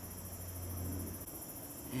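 Crickets chirping in a steady, high-pitched night chorus. A low hum underneath stops a little over a second in.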